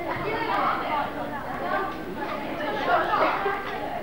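Indistinct chatter: several people talking at once, with no clear words.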